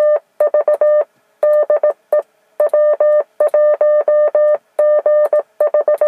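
Morse code (CW) signal received on a Yaesu FT-857D transceiver on the 10-metre band: one steady beep note keyed on and off in quick dots and dashes from the radio's speaker.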